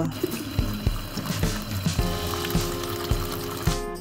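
Tap water running over a piece of salt cod and splashing into a plastic colander while it is rinsed to wash off the salt crust. Background music with a steady beat plays over it, adding sustained notes about halfway through.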